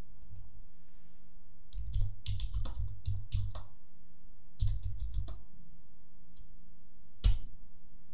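Computer keyboard typing in two short bursts of keystrokes, then one louder single key strike near the end as the command is entered.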